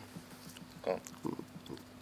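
Quiet, hushed speech: contestants murmuring to each other in a few short snatches, including a low "okay", over a steady low electrical hum.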